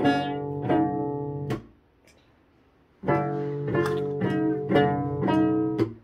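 Cello played pizzicato: single plucked notes, about two a second, then a pause of about a second and a half, then another run of plucked notes that is damped off near the end.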